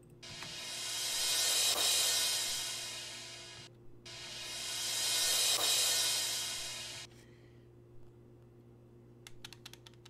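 An 'explosion cymbal' drum sample played twice through a high-pass EQ: each time a bright, hissing cymbal wash swells up to a peak and dies away over about three and a half seconds, with its low end cut. A few sharp clicks follow near the end.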